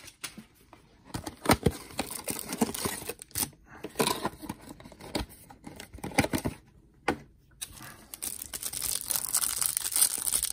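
A cardboard trading-card hanger box being torn open by hand, then the cellophane wrap around the stack of cards crinkling, in irregular rips and crackles with a short pause about seven seconds in.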